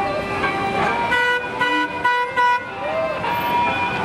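The Bluesmobile's car horn sounding a run of short honks, starting about a second in and ending around two and a half seconds, over crowd chatter.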